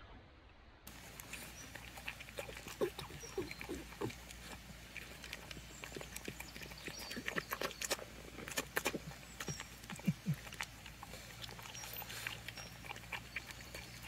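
A dog eating dry kibble, starting about a second in, with many short, irregular crunches as it chews.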